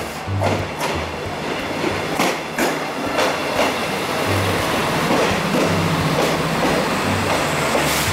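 Renfe series 599 diesel multiple unit arriving alongside the platform: a steady running noise with irregular knocks of the wheels over rail joints, under soft background music with a low bass line.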